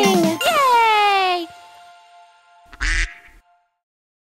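The end of a children's song: a last sung note slides down in pitch while a bell-like chime rings out. A short cartoon duck quack follows near the end, then the sound stops.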